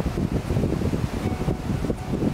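Wind buffeting the microphone, an uneven low rumble.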